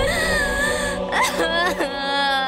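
A woman crying in two long, high, wavering wails, over steady background music.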